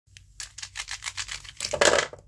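Plastic brush pens clicking together in a quick run of light taps, then clattering louder as they are set down on a paper sheet near the end.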